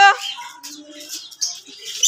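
Faint, scattered bird chirps in the background.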